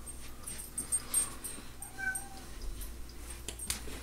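A house cat gives one short meow about two seconds in, among scattered footsteps and knocks from a handheld camera.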